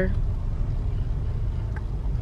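Steady low road and engine rumble of a moving car, heard from inside the cabin.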